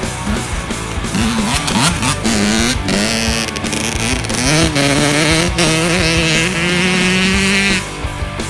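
Small dirt bike's engine revving, its pitch climbing and dropping back several times, then held steady at high revs under load for a few seconds before it cuts off suddenly near the end.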